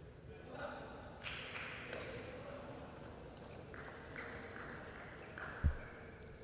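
Quiet sports-hall room tone with a few faint taps of a table tennis ball and a single low thud near the end.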